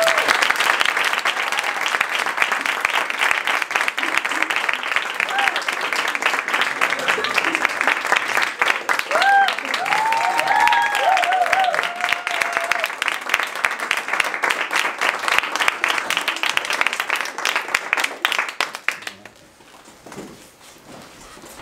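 An audience applauding: dense clapping, with a few voices calling out about halfway through. The clapping dies away near the end.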